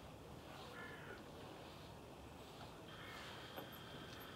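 Quiet outdoor background with a faint bird call about a second in, and a thin steady high tone near the end.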